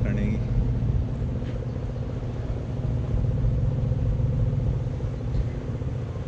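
Steady low drone of a river paddle boat's engine and machinery running while the boat is under way.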